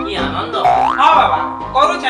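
Background music with comic sound effects whose pitch slides down and back up, a cartoon-style boing, repeated a few times.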